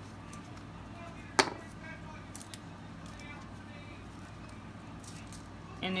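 Gloved hands handling plastic epoxy resin bottles and a cup: one sharp click about a second and a half in, then a few faint taps and rustles over quiet room noise.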